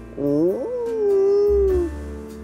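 A cartoon dachshund's long howl: one call that swoops up at the start, then is held and sags slightly before it stops, over soft held background music.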